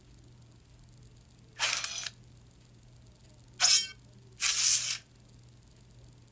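Three short hissing bursts of sound-effect noise from an animated logo intro played on a smartphone: one about a second and a half in, then two close together near the four-second mark. A faint steady hum runs underneath.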